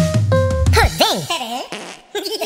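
Cartoon jingle: piano-like notes over a loud low buzzy blat, followed by wobbling, sliding comic tones that rise and fall several times and stop just before the end.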